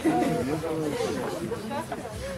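Indistinct chatter: overlapping voices of people talking casually, with no words clear enough to make out.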